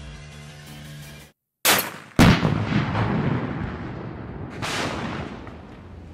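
Background music cuts out, then a .50-calibre rifle shot comes about a second and a half in. Half a second later a louder blast follows as the target car explodes, with a long rolling decay, and a second blast comes near five seconds.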